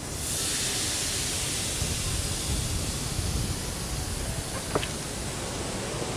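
Steady rushing noise over a low rumble. It is brightest and hissiest just after the start and slowly eases.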